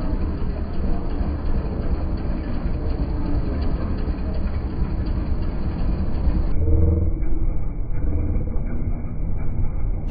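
Break Dance fairground ride running, a loud, steady low rumble from its machinery and spinning cars.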